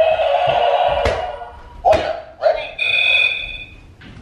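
Electronic scoreboard of an over-the-door mini basketball hoop sounding its game-start signal. A long steady buzz-like tone stops about a second in, then come two short lower beeps and a higher beep about a second long, as the 60-second countdown begins. A couple of sharp knocks fall among the beeps.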